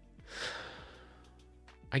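A man sighing: one short, breathy exhale about half a second long, over faint background music.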